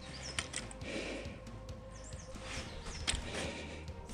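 Quiet movement on snow, soft crunches and a few sharp clicks, with several short high chirps from a small bird over faint background music.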